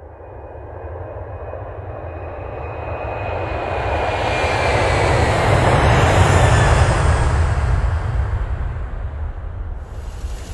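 An airplane passing overhead: its engine noise swells to a peak about six to seven seconds in and then fades, with a faint high whine sliding slowly down in the first few seconds.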